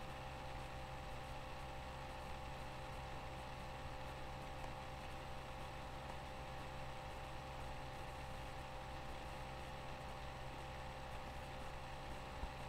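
Quiet room tone: a steady low hum and hiss with faint steady tones, and no distinct events.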